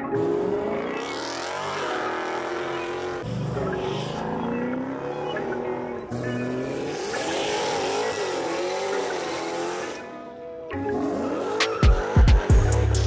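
Car tyres squealing in long, wavering screeches under hard throttle from Dodge muscle cars doing burnouts, with the engine revving up near the end.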